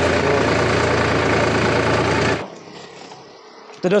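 Solis Yanmar 5015 E tractor's diesel engine running loudly and steadily close by, cutting off suddenly about two and a half seconds in.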